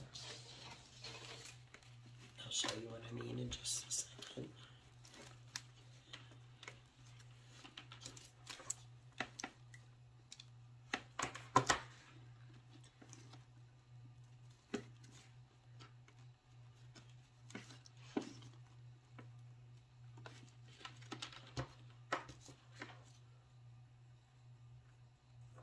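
Scattered light clicks and rustles of hands working satin ribbon around a cardboard tube and handling craft pieces, over a steady low hum; the sharpest click comes about halfway through.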